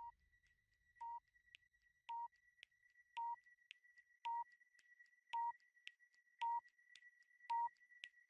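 Quiz countdown timer sound effect: a short electronic beep about once a second, eight beeps getting steadily louder, with faint ticks in between as the seconds run down.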